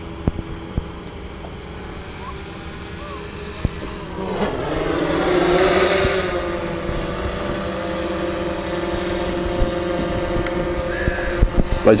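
Propeller hum of a DJI Mavic 2 Zoom quadcopter drone, a steady buzz that grows louder about four seconds in as the drone comes nearer, then holds steady.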